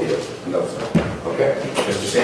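Indistinct voices talking in a large room, with a sharp knock about a second in and another near the end, like objects set down on a desk.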